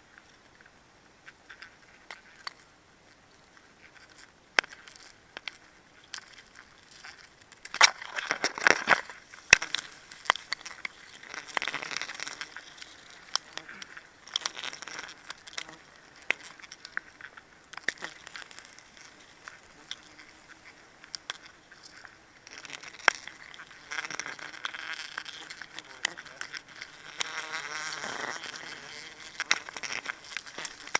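Honeybees buzzing around their comb, mixed with rustling of leaves and branches and scattered clicks and knocks from handling in the tree. The rustling comes in louder bouts about eight seconds in, around twelve seconds, and again near the end.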